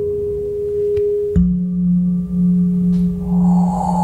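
Ambient music played back through Cerwin Vega XLS15 floor-standing speakers and a CLSC12S subwoofer in a room: long ringing, bowl-like tones. A higher held note gives way abruptly to a strong lower one about a second and a half in, and a soft hissing shimmer comes in near the end.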